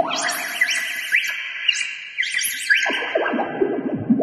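Stylus-played synthesizer run through a filter effects pedal, playing a bright, high-pitched electronic drone with quick rising pitch sweeps. About three seconds in the tone drops lower.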